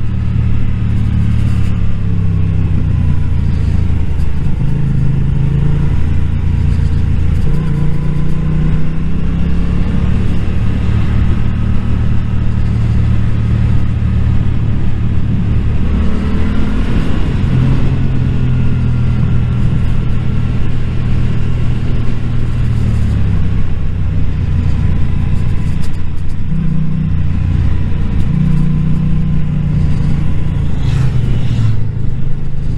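Yamaha naked motorcycle's engine running on the road, its note holding steady and then rising and falling several times as the rider rolls the throttle and changes gear, with a climb and drop about halfway through. Wind noise on the helmet microphone runs underneath.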